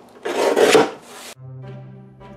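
Paper trimmer's sliding blade drawn along its rail, slicing through a sheet of watercolour paper: one rasp about a second long. Background music with a steady low note then begins and carries on.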